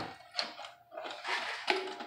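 Hands handling a wooden mantel clock, working at its hinged face: a sharp click and then light scraping and another click as the clock is moved.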